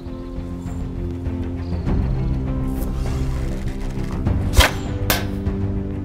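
Background music with held notes building up. About four and a half seconds in come two sharp cracks half a second apart, the first the louder with a low thud: the sound of arrows loosed from a war bow.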